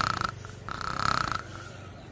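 A sleeping man snoring: two short snores about a second apart.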